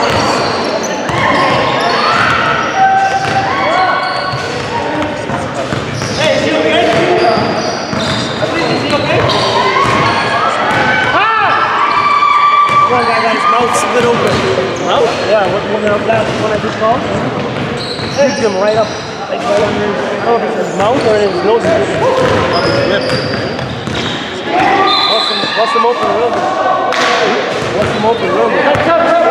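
Basketball bouncing on a hardwood gym floor, with indistinct voices, all echoing in a large hall.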